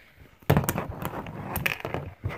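Rustling and crackling handling noise with many sharp clicks, close to the microphone, starting about half a second in.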